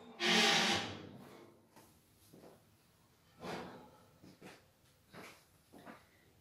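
Kitchen handling sounds as a freshly baked cake in a metal tube pan is taken out of the oven: one loud burst of noise near the start that fades over about a second, then a few faint knocks and rustles.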